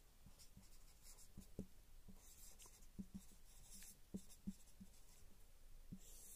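Whiteboard marker writing on a whiteboard: faint, short scratchy strokes of the felt tip across the board, with a few soft taps.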